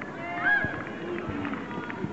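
High children's voices shouting and calling across a football pitch during play, several at once, with the loudest call about half a second in.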